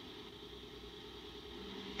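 Faint, steady background hum and hiss with no distinct sound events.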